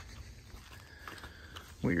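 Low, steady background noise with a few faint clicks, then a man's voice starts near the end.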